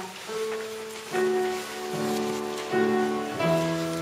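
Upright piano playing a slow hymn, with a new chord struck a little faster than once a second.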